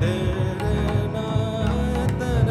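Male Indian classical vocalist singing a gliding, ornamented line, accompanied by drums that keep a dense rhythm underneath, as part of an Indian–jazz ensemble piece.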